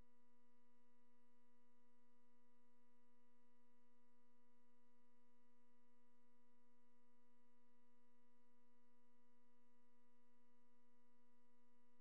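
Faint steady electronic tone with a stack of overtones, holding one pitch without change.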